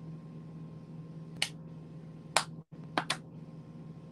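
Four small sharp clicks, the last two close together about three seconds in, over a steady low electrical hum and hiss.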